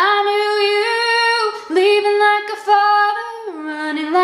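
A woman singing a solo vocal line in long held notes that step up and down in pitch, with short breaks for breath, in a tiled bathroom.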